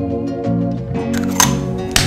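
Background music with a steady pitched accompaniment. Two sharp clicks cut across it in the second half, the first with a brief hiss around it.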